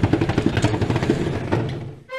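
Sound effect of a heavy steel vault door unlocking and opening: rapid mechanical clicking and clanking of gears and bolts over a low rumble, fading out near the end.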